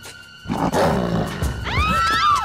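A loud, rough wolf-like roar bursts out about half a second in, as the half-wolf girl snarls at the others. It is followed near the end by a few high, startled cries that rise and fall, over a background music score.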